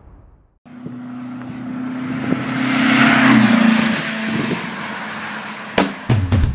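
A motor vehicle's engine passing by: a steady engine note that swells to its loudest about three seconds in, then drops slightly in pitch and fades. A sharp hit comes just before the end.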